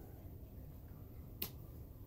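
Quiet room tone with a single sharp click about a second and a half in.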